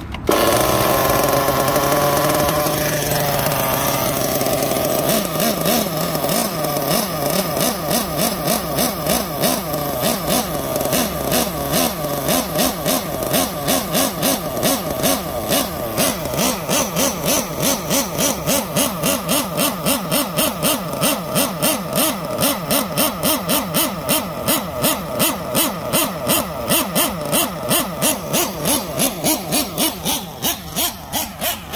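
Nitro RC buggy's glow engine running. It sits higher for the first few seconds, drops back about three to four seconds in, then runs with a regular surge in pitch and level about twice a second to the end.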